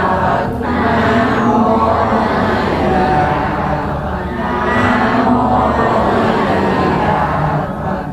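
A large group of worshippers chanting Buddhist prayers together in unison, a steady, sustained chant of many voices.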